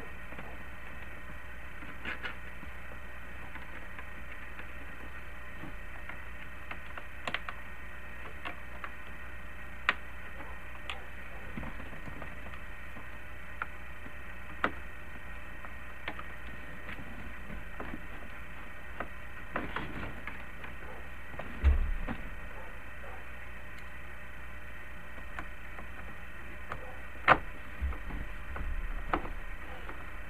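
Scattered light clicks and knocks of plastic dashboard trim and a screwdriver as a CB radio and its bezel are dry-fitted and screwed back into a Jeep Cherokee XJ dash, over a steady background hum. There is a heavier thump a little past the middle and a sharp click near the end.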